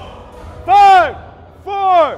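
Two loud shouted calls about a second apart, each short and rising then falling in pitch, from a person in the crowd yelling encouragement at a competitor.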